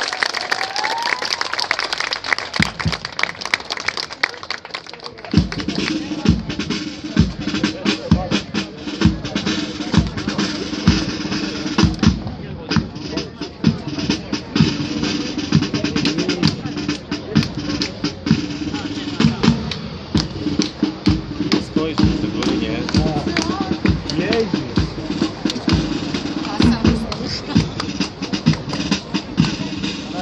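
Brass band drums striking a few scattered beats. From about five seconds in, the full brass band plays with a steady drumbeat.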